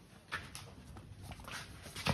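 Faint, scattered scuffs and taps of a young sheep's hooves and people's sandalled feet on a concrete floor as the reluctant lamb is pulled along on a rope.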